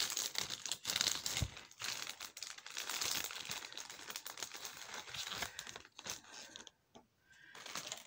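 Crinkling and rustling of packaging as a piece of jewelry is handled, a dense run of small crackles for about six seconds that thins out and dies away near the end.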